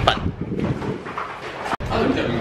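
Background noise of a busy train station, with indistinct voices, cut off abruptly near the end.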